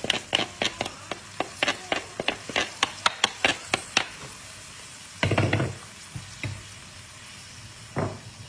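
A wooden spoon tapping and scraping quickly against the rim of a plastic bowl and a steel frying pan as courgette flowers are pushed into the pan, over a faint sizzle of hot oil in the pan, whose flame has been turned off. The tapping stops about four seconds in, and a single dull knock follows a second later.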